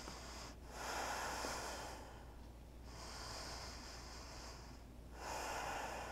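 A person's slow, audible breathing: long, hushed breaths following one another every second or two while she holds a standing yoga balance pose.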